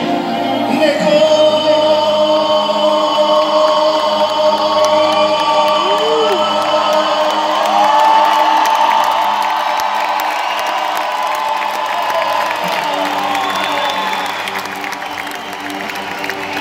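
Live Persian pop performance: a male singer holds long sung notes over keyboard and band accompaniment, with the audience cheering and whooping.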